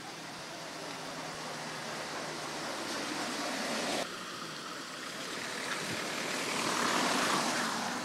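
Tyre hiss of a vehicle passing on a rain-wet road, a steady rushing that swells, breaks off suddenly about halfway, then swells again to its loudest near the end.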